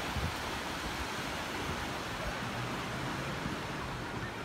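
Wind on the microphone and small waves washing onto a sandy lake shore, making a steady, even noise.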